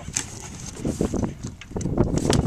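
Cardboard box being handled and its flaps pulled open inside a metal parcel compartment: irregular rustling and scraping, busier and louder near the end.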